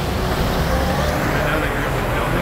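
Steady street traffic noise, a low rumble of cars on the road with an even hiss over it.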